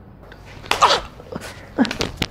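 Two short, loud vocal outbursts from a man, about a second apart: the first sneeze-like and falling in pitch, the second shorter.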